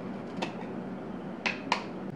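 Glass jar and its metal lid clicking as they are handled and the jar is set down on the counter scale: three short sharp clicks, one a little way in and two close together in the second half.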